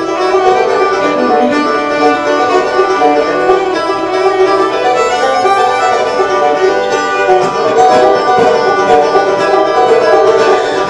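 Fiddle and banjo playing a bluegrass instrumental together, the fiddle bowing the melody over picked banjo rolls.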